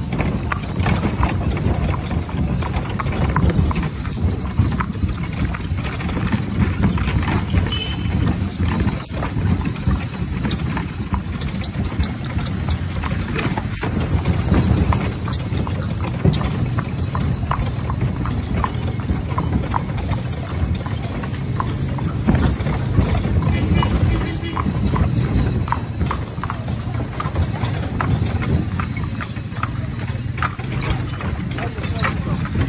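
A mare's hooves clip-clopping at a walk on a packed-dirt street as she pulls a shaft cart, over a steady low rumble.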